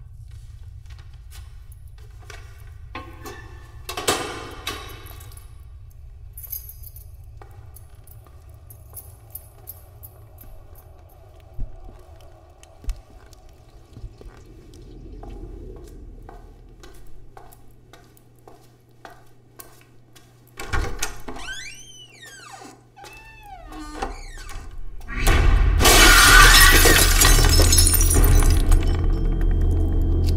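A window smashed by a thrown object: a loud crash of breaking glass about 25 seconds in, under a film score. Before it, a tense, quiet stretch with scattered knocks and one sharp hit a few seconds earlier.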